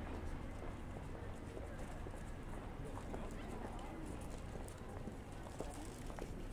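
Busy pedestrian street ambience: indistinct voices of passers-by with a run of clopping steps about halfway through.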